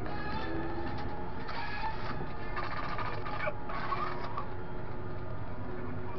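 Fendt tractor engine running steadily under load, heard from inside the cab as a low drone. Four short pitched sounds lie over it in the first four and a half seconds.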